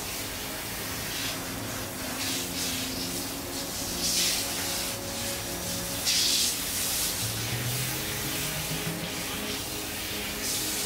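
Water spraying from a handheld shower head onto hair and scalp at a shampoo basin: a steady hiss that swells louder twice, about four and six seconds in. Soft background music with held tones runs underneath.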